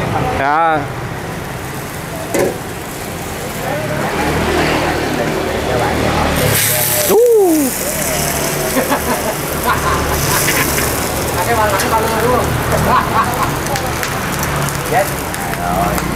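Gas burners under bánh xèo woks hiss steadily. About halfway through there is a loud burst of sizzling as shrimp go into a hot, oiled wok, and the frying goes on after it. Voices murmur faintly around the stall.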